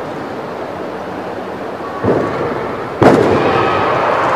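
A gymnast's tumbling pass on a sprung floor exercise mat: two heavy thuds about a second apart, the second, from the landing, the louder. The background stays louder after the landing.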